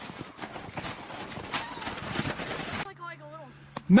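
Footsteps crunching in snow as someone walks uphill through it, an uneven run of short crunches that stops abruptly about three-quarters of the way through. A faint voice and a low steady hum follow.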